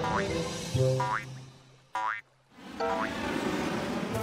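Cartoon background music with short, springy rising 'boing'-like sound effects, about four of them roughly a second apart. The sound cuts out briefly just after the middle.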